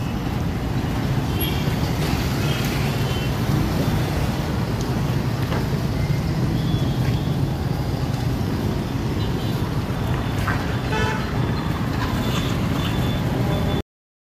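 Street background noise: a steady rumble of traffic with brief distant horn toots now and then.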